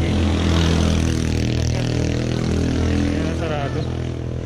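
A motor vehicle's engine running steadily close by, loudest in the first second, with a brief voice near the end.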